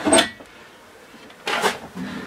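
Wooden cabinet doors being handled and opened: two short knocking, clattering sounds, one at the start and one about a second and a half later.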